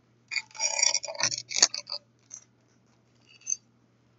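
Hard white plastic capsule of a Zuru 5 Surprise Mini Brands ball being worked open by hand: a run of crackling plastic clicks over the first two seconds ends in one sharper snap, followed by a couple of faint ticks.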